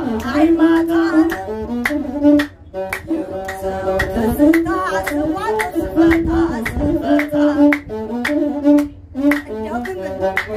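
Ethiopian azmari music: a masenqo (single-string bowed fiddle) playing a melody under a man's and a woman's singing, over a steady beat of sharp strokes about twice a second. The music drops out briefly twice.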